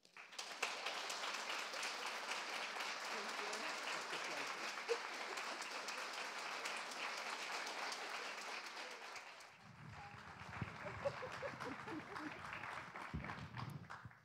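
Audience applauding. The clapping fades away about nine or ten seconds in and gives way to a quieter low rumble with faint voices.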